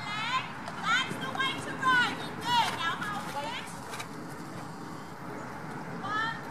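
High-pitched children's voices calling out in short gliding shouts, the words not made out, several times over the first four seconds, then quieter.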